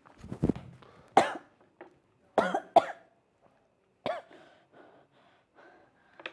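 A person coughing in a fit: about five sharp, separate coughs over the first four seconds, followed by fainter coughing sounds.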